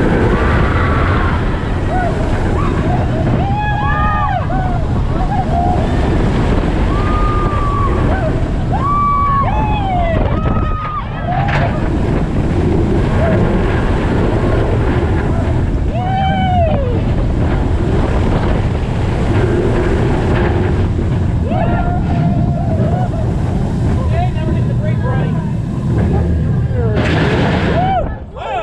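Steel dive roller coaster heard from the moving train: a steady rush of wind and track roar. Riders let out several rising-and-falling whoops and screams over it.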